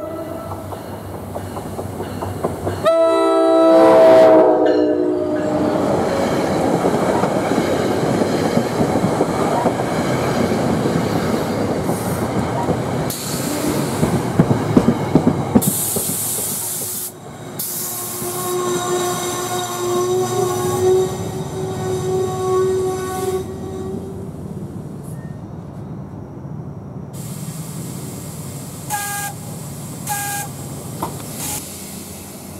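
NJ Transit commuter train arriving: the locomotive's chime air horn gives a blast about three seconds in, then the locomotive and coaches roll past with a loud rumble and wheel clatter. Later a thin steady whine rises over the rumble for several seconds as the train slows for its stop, then the sound settles to a lower rumble.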